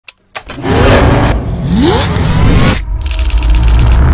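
A car engine revving, with a rising rev about halfway in, then cutting off abruptly just before an evenly repeating pulsing sound near the end.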